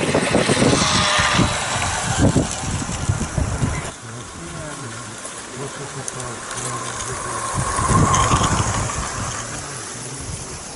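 Small-gauge garden railway trains running: a locomotive and wagons roll past, their wheels rumbling and knocking on the rails. About four seconds in the sound cuts to a quieter, steadier rumble, which grows louder near the end as a rake of wagons passes close.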